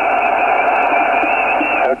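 Steady hiss of single-sideband receive audio from a Yaesu FT-857D's speaker tuned to the 10-metre band, cut off above about 3 kHz, with a faint voice under the noise.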